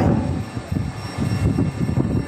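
Low, uneven rumbling noise.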